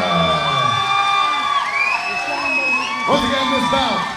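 Ring announcer's amplified voice drawing out a fighter's name in long, held syllables, the pitch sliding down, holding, then gliding up and holding again, with the crowd cheering underneath.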